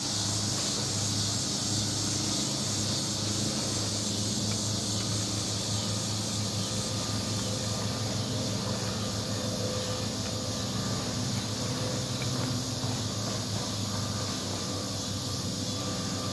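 Steady outdoor insect chorus, a high continuous hiss, over a low steady hum.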